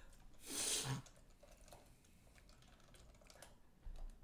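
Faint, scattered light clicks and scratches of a felt-tip marker working on sketchbook paper, with one short louder rush of noise about half a second in.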